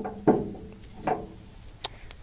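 Quiet handling noises, then a sharp click near the end: a ratchet strap's hook being set into the stake pocket on the side of a trailer.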